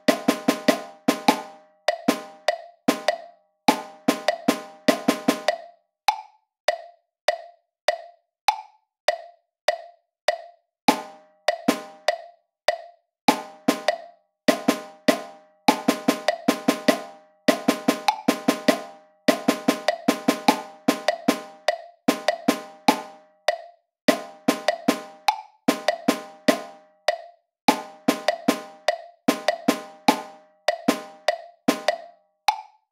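Notation-software playback of percussion rhythm exercises: quick triplet strokes over a steady metronome click. From about six to eleven seconds in, only the evenly spaced clicks sound, counting in before the drum strokes start again.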